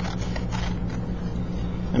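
Scissors cutting paper, a few faint snips in the first second, over a steady low hum.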